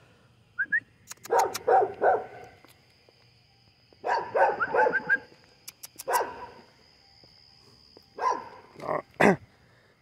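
A dog barking in several short bouts with pauses between.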